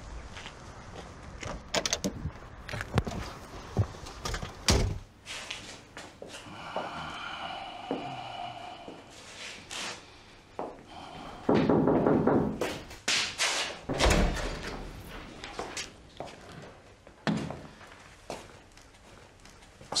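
Doors shutting and footsteps: a string of thuds and clicks, with a drawn-out pitched sound about a third of the way in and a louder, rougher stretch just past the middle.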